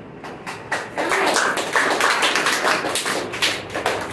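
A small group of people clapping their hands: a few scattered claps at first, then dense, irregular applause from about a second in.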